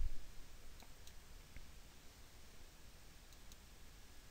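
Quiet room tone with a low hum and a few faint, short clicks in the first couple of seconds.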